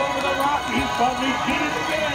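Voices over the parade's loudspeaker music, with pitched lines bending and some held like sung notes.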